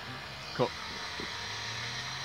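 A steady low engine hum in the background, with one short spoken word, "Cut," about half a second in.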